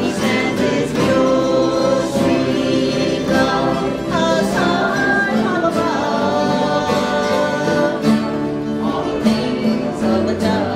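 Several voices singing a country gospel song together, with an acoustic guitar strumming along and a harmonica played.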